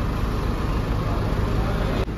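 Range Rover's engine idling, a steady low rumble.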